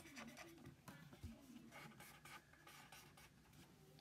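Faint scratching and light ticks of a coloured pencil on paper, close to silence.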